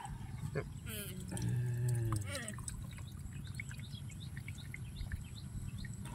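A short voice-like sound falling in pitch about a second in, then faint dripping and small wet clicks as hands scoop a mass of wet winged insects out of a bucket of water.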